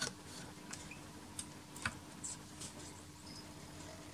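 Naim CD3 CD player's transport spinning a disc held down by a heavy metal clamp puck, quiet apart from a faint steady hum and a few faint ticks. There is no rattle or knocking: with the heavier puck the disc is clamped firmly and no longer slips on the turntable.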